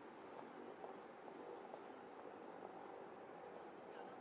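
Faint outdoor street ambience: a steady low background murmur, with a quick run of about ten short, high chirps in the middle.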